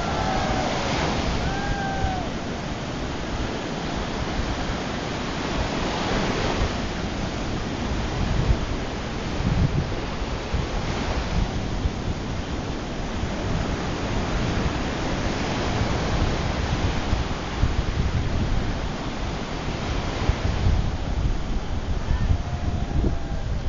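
Sea surf breaking and washing up a sandy beach, swelling every four to five seconds, with wind buffeting the microphone.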